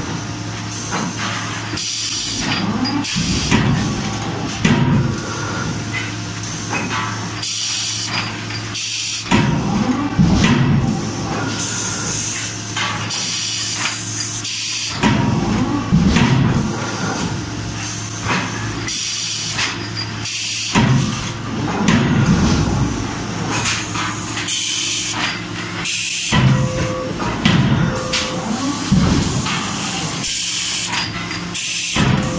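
A CNC hydraulic die forging hammer striking hot steel workpieces: heavy blows in irregular groups, with bursts of hiss between them over a steady machine hum.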